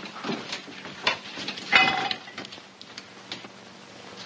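Glass bottles knocking and clinking as they are handed up and set on a shelf. There are several light knocks, and a louder ringing clink a little under two seconds in. A faint steady hum runs underneath.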